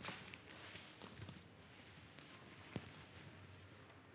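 Near silence: room tone with a few faint knocks and footsteps on a hard floor.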